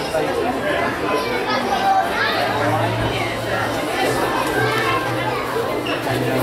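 Indoor shop ambience: several people chattering at once, with children's voices among them.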